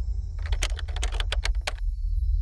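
A quick run of about ten sharp keyboard-typing clicks, lasting just over a second, over a steady low bass drone.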